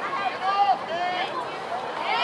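Voices of bystanders near the microphone chattering and calling out, several of them high-pitched.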